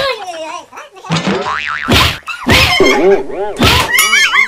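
Slapstick beating with a stick, dubbed with comic sound effects: three loud whacks about two seconds apart, with wobbling, springy boing tones bouncing between them.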